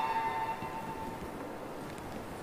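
A single clear ringing tone that starts sharply and fades away over about a second and a half, over quiet room noise in a large, echoing church.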